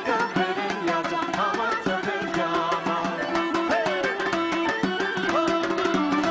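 Live Armenian folk dance music: a quick, even hand-drum beat under a steady held drone, with a melody that bends and glides above it.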